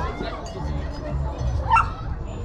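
Background voices of people talking, with one short, sharp yelp near the end.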